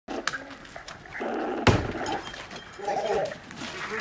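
One loud bang a little under halfway in as the team forces the steel gate, with a few sharp clicks before it. Raised voices follow near the end.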